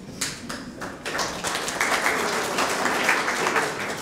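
Audience applauding: a few scattered claps at first, building to a steady round of clapping about a second in.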